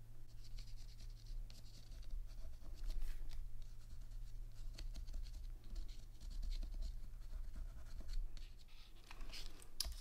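Tim Holtz watercolor pencil scratching quietly in short, irregular strokes over the raised areas of an embossed watercolor-paper panel.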